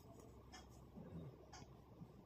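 Very faint scraping and rustling of plastic knitting needles working through yarn, in a few soft strokes.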